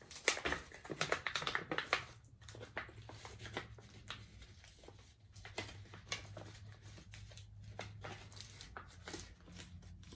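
A resealable plastic bag being opened and its contents handled, crinkling and rustling in irregular crackles. It is busiest in the first couple of seconds.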